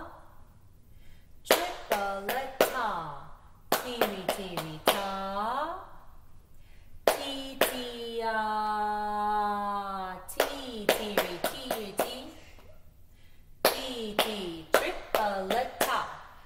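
A woman chanting rhythm syllables (ta, ti-ti) in time with claps, sounding out a written rhythm note by note. About eight seconds in she holds one syllable for a longer note.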